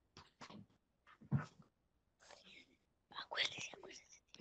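Faint, whispered speech in short scattered fragments, a little louder about three seconds in.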